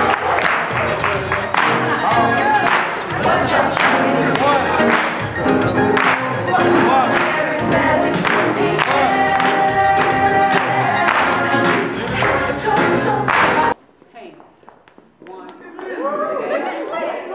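Group singing over music, with steady rhythmic hand clapping. It cuts off suddenly about two seconds before the end, leaving only faint room sound.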